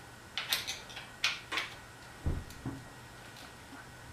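A 5 mm Allen key working a bicycle seat-post clamp bolt loose: a handful of sharp metal clicks in the first two seconds, then two duller knocks a little past the middle.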